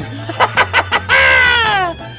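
A man cackling with a few short bursts of laughter, then letting out one high whoop that falls in pitch.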